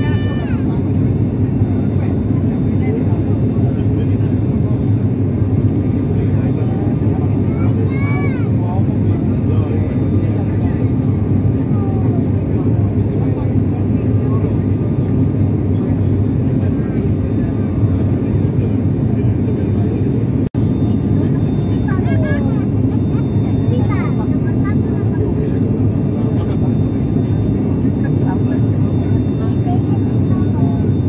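Steady, loud cabin drone of a turboprop airliner in flight, the engines' low hum dominating, with faint voices rising above it a few times. The sound breaks off for an instant about two-thirds of the way through.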